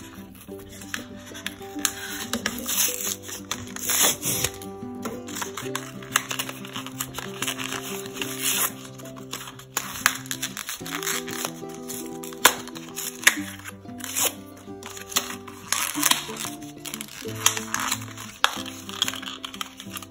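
Plastic blister packaging crinkling and its card backing being peeled and torn open, heard as irregular crackles and rustles, over background music of held notes that change every second or two.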